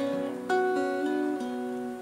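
Steel-string acoustic guitar picking the opening notes of a song: a chord plucked about half a second in, its notes left to ring and slowly fade.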